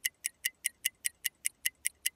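Clock-ticking sound effect from the Monkey video-chat app's countdown timer: short, quick, even ticks, about five a second, as the timer runs out.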